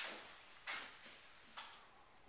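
Faint footsteps on a bare floor, three soft scuffing steps a little under a second apart, the first the loudest.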